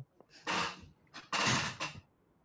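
A man coughing twice, two harsh half-second coughs about a second apart, from something that went down the wrong pipe.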